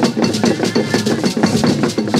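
Traditional Anlo-Ewe percussion music: a drum ensemble playing a fast, dense, steady rhythm, with a sharp high struck accent repeating about three to four times a second.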